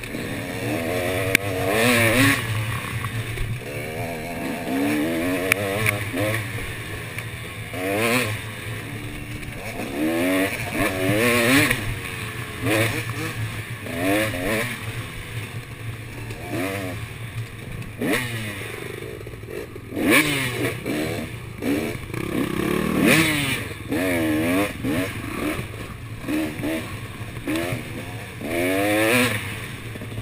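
KTM off-road dirt bike engine under riding load, revving up and down every second or two as the throttle is worked through the gears on a tight, twisting trail.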